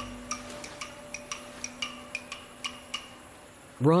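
A rapid, regular ticking, about five or six light ticks a second, over a faint held low tone that fades away.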